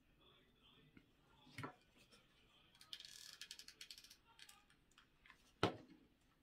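Close handling of stiff artificial floral stems and their foliage during wreath-making: a fast run of crackling clicks in the middle, with a knock early on and a louder, sharp knock near the end.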